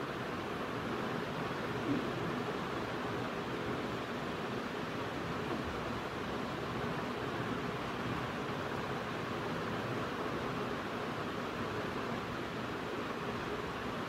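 Steady, even hiss of room noise with no distinct events.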